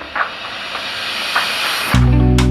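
A steady hiss that grows louder, with a few faint ticks, cut off abruptly as music comes in.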